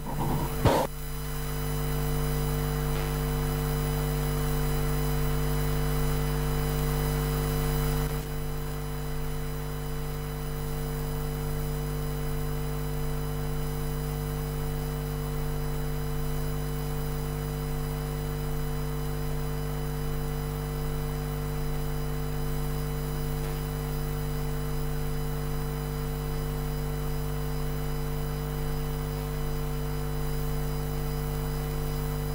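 Steady electrical hum and buzz made of several constant tones, with no speech. It eases slightly after about eight seconds.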